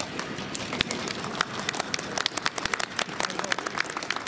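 Audience clapping: many scattered sharp hand claps, growing denser after the first second, with some voices mixed in.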